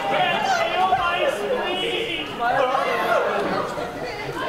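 Speech only: an audience member talks from the crowd, away from the microphone, over background chatter.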